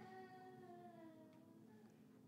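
Near silence: room tone with a low steady hum, and a faint, drawn-out pitched sound that slides slightly down and fades out after about a second and a half.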